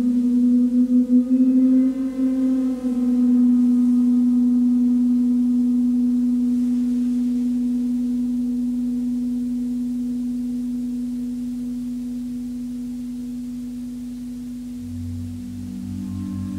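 Large Jupiter planet gong played with a friction mallet, giving a sustained singing tone. The tone wavers for the first few seconds, then holds steady and slowly fades. A deeper tone joins near the end.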